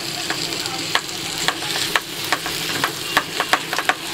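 Masala chicken sizzling in a frying pan just after yogurt has been added, with a wooden spatula stirring it through. The spatula gives many short clicks and scrapes against the pan over a steady sizzle.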